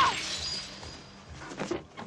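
A pane of glass shattering: the loud crash at the start fades into the scatter of falling shards, with a couple of small knocks about a second and a half in.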